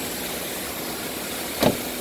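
Steady running noise of a car engine idling, with one short sudden sound, falling in pitch, about one and a half seconds in.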